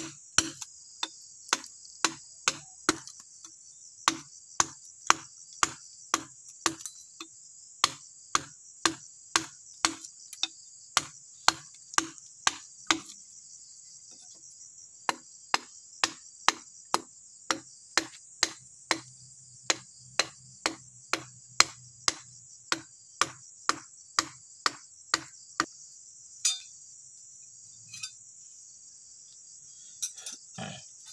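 Wooden mallet striking a metal chisel into hard ulin (Bornean ironwood), sharp knocks about two a second as the carver cuts the log, with a short pause partway and the strokes stopping near the end. A steady high-pitched insect chorus runs underneath.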